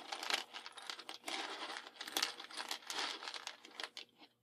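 A bundle of wooden strike-on-box matchsticks rattling and clattering as it is worked between the hands and spilled out onto a tabletop, a dense run of small clicks and rustles.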